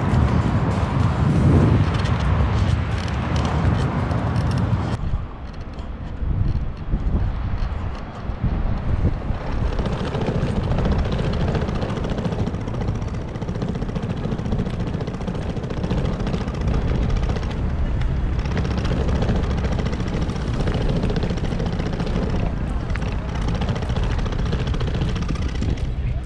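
Steady low outdoor rumble with no distinct events, dipping briefly about five seconds in.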